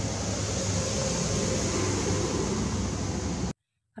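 Kobelco SK200 hydraulic excavator's diesel engine running steadily with a low hum, cutting off abruptly near the end.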